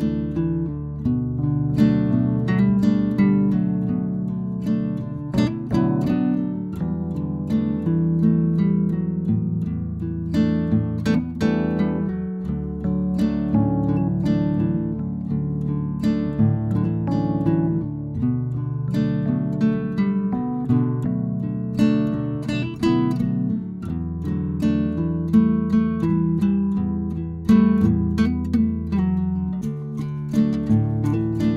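Background music: an acoustic guitar plucked and strummed in a steady run of notes.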